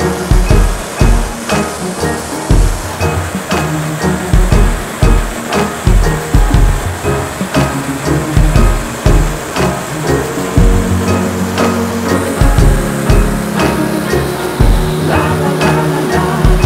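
Background music with a steady, heavy drum beat and sustained bass notes.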